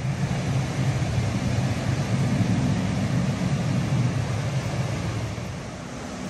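Rapids of the Potomac River rushing steadily, swelling in the middle and easing a little near the end.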